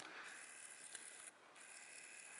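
Near silence: only a faint, steady background hiss, dipping briefly a little after the middle.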